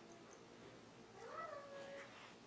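A faint, short, high-pitched voice-like call about a second in, rising and then levelling off as it fades.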